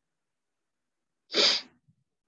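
A person sneezing once, a single short, sharp burst about a second and a half in.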